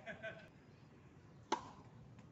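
A single sharp pock of a tennis ball struck by a racket about one and a half seconds in, with a short ring of the strings.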